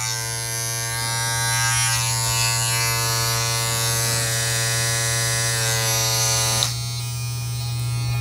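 Two battery-powered nose-hair trimmers, a Philips Norelco NT3600 and a Zorami, running side by side with their rotary cutter heads spinning. There is a steady low hum throughout and a higher buzzing motor whine that starts at once and cuts off about seven seconds in.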